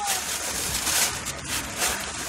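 Shopping bag rustling as purchases are rummaged through, swelling a few times.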